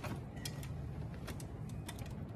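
Ambulance stretcher being lifted by its crew: a few light clicks from its metal frame and latches, about half a second in and again near the end, over a low steady background.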